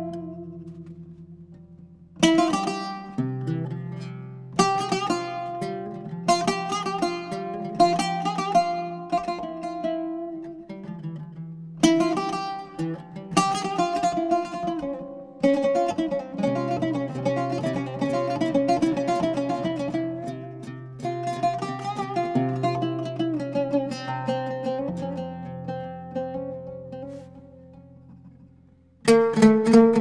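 An oud duet: single plucked notes struck and left to ring, with short pauses between phrases. A busier stretch of fast repeated plucking comes in the middle, then the playing fades before a loud new phrase enters just before the end.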